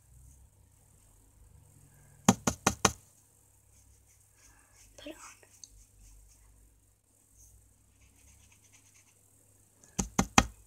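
A quick run of four or five sharp knocks about two seconds in, a hard object rapped against a surface, with a shorter run of knocks again at the very end.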